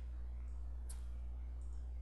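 Two single computer mouse clicks, one right at the start and one about a second in, over a steady low electrical hum.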